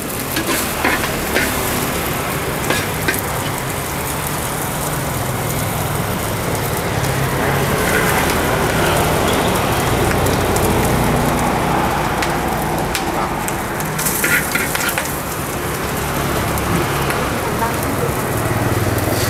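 Bánh xèo frying in hot oil in large steel woks over open fire: a steady, loud sizzle with shrimp and pork in the oil. A few short metal clinks of ladle and spatula come about a second in, near three seconds, and again around fourteen seconds.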